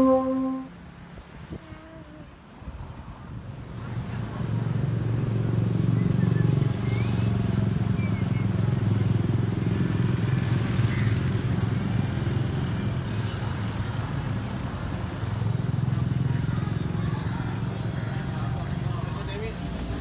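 Street traffic: motorcycle and car engines running as vehicles pass, a steady low rumble that builds up about four seconds in. A held musical note with overtones cuts off in the first second.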